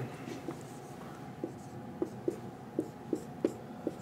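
Faint sounds of writing by hand, a series of about seven light taps and strokes in the second half.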